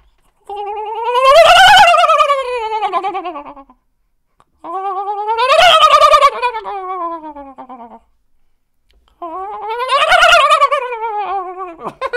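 A man's comedic vocal impression of a 'helicopter king turkey' call: three long wailing calls, each rising and then falling in pitch, with a short silence between them.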